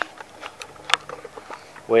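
Two sharp clicks about a second apart over quiet room tone, then a man's voice starts near the end.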